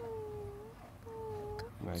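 Two drawn-out high-pitched vocal calls, each under a second, one after the other, each dipping slightly in pitch in the middle and rising again at its end.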